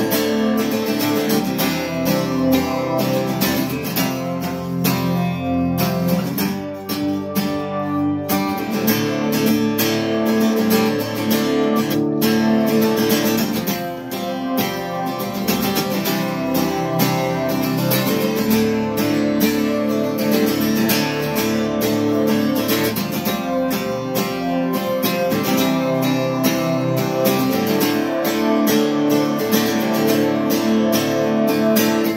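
Acoustic guitar strummed in a steady rhythm, with a guitar synth pedal's voice played quietly through an amp and sustaining the chords behind it.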